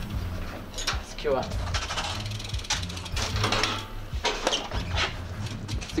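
A metal security window grille and door fittings being tugged and rattled, several sharp clanks and clicks, as they are tried to check that they are locked, over low background music.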